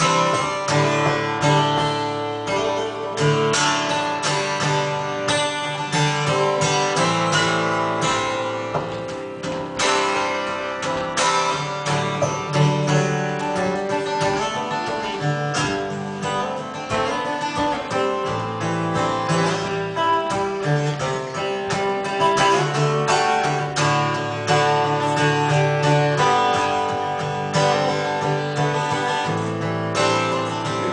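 Acoustic guitar strummed steadily through a run of chords, with no voice over it.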